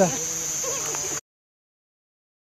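Night insects calling in one steady, high-pitched drone, with a faint voice under it; the sound cuts off abruptly just over a second in.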